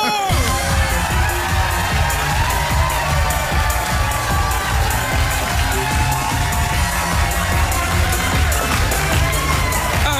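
Loud dance music with a heavy, steady bass beat, kicking in abruptly, with a studio audience cheering over it.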